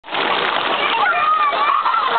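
Pool water splashing and sloshing as children play in it, with high children's voices calling out from about a second in.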